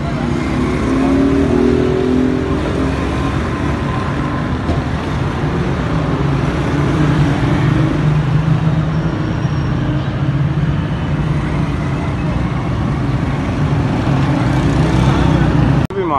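Busy street traffic: motor vehicle engines running and passing close by in a steady, loud din.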